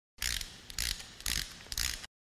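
Intro sound effect of a ratcheting gear mechanism: four sharp clicking strokes about half a second apart.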